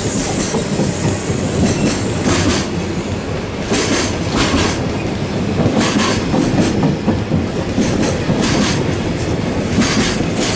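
Container wagons of a JR Freight train rolling past close by, a loud steady rumble broken by repeated clacks as the wheels cross the rail joints.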